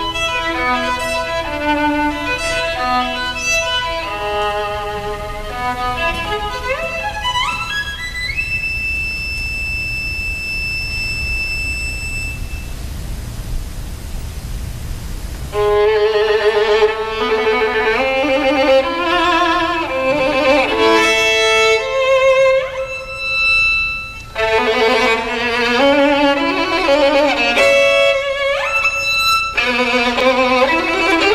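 Violin playing classical music: quick runs, then a fast rising passage into a long high held note. After about three seconds without notes, the violin comes back louder with rapid figures and wide leaps.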